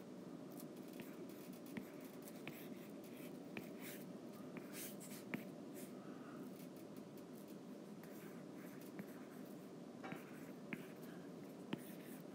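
Faint, irregular ticks and light scratching of a stylus on a tablet's glass screen as lettering is drawn, over a steady low background hum.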